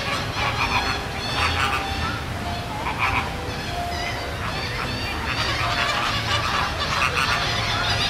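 A flock of flamingos calling: many short calls overlap into continuous chatter, with no pause.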